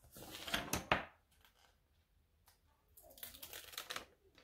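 Sticker sheets and paper being handled: a crinkly rustle with two sharp clicks in the first second, then a softer rustle near the end.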